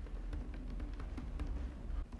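Computer keyboard keys clicking in an irregular run of typing, over a low steady hum.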